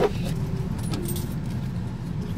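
A Hyundai van's engine idling, heard from inside the cabin, with a short click right at the start.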